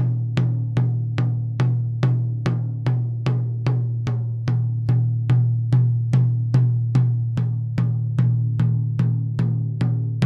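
A drum struck with a stick in a steady, even pulse, about two to three hits a second, its low ringing tone carrying through between strokes. It is heard through a close dynamic microphone being angled between the edge of the drum head and its centre: more harmonic overtones when aimed at the edge, a purer tone when aimed at the centre.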